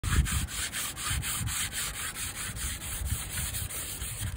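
Hand sanding of the painted steel roof of a narrowboat, rubbing it down for repainting: quick, even scraping strokes, about four a second.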